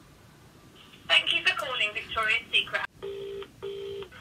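Mobile phone on speaker placing a call: a few seconds of speech, then the British double-ring ringing tone, two short steady beeps close together near the end, as the outgoing call rings.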